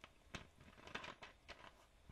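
Near silence: room tone with several faint, short clicks, the strongest about halfway through.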